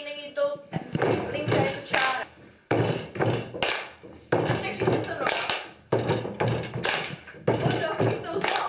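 A group of voices chanting in a steady rhythm together with hand claps and thumps. Each beat starts suddenly and fades, about one every second and a half.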